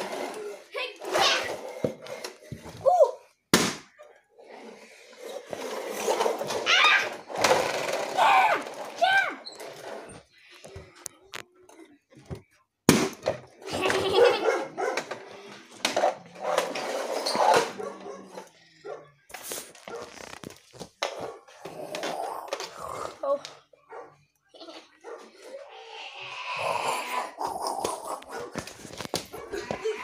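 A person's voice making wordless play noises and calls in bursts, with a few sharp knocks among them.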